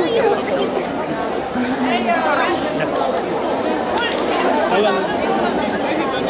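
Many overlapping voices of spectators talking at once: a steady crowd chatter.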